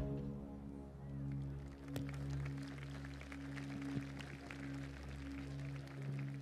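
A soft, steady musical drone of a few low held notes, left sounding as loud chanting dies away at the start, with a few faint clicks over it.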